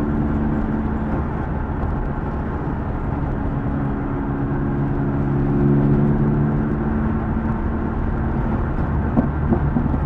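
Classic Mini's engine and road noise heard from inside the cabin while cruising. The engine note runs steadily, eases slightly for the first few seconds and picks up again around the middle. There are a few short knocks near the end.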